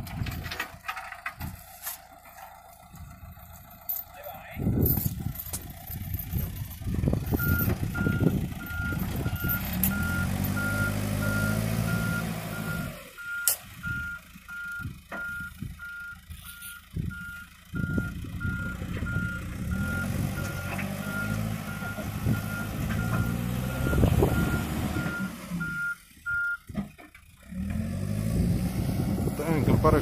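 Backhoe loader's reverse alarm beeping steadily at one pitch for about twenty seconds as it backs up, over its diesel engine running under load, with the engine note rising and falling.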